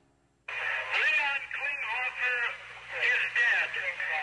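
Speech: a man's voice over a telephone line, thin and narrow-sounding, with a faint steady hum underneath, starting about half a second in after a brief silence.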